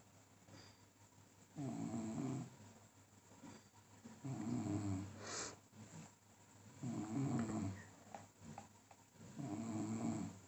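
Rhythmic snoring: four low snores about two and a half seconds apart, the second ending in a brief sharper snort.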